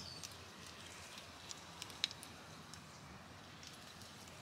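Faint rustling of a shrub's twigs and leaves being handled while the leaning bush is tied up, with a few small clicks around the middle.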